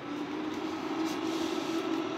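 Automatic egg incubator running: a steady electric hum with a haze of air noise, growing slightly louder.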